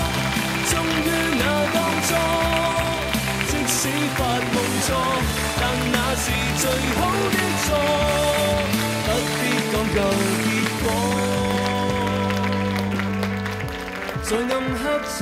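Music playing: a melody over a stepping bass line, ending in a long held chord that stops shortly before the end.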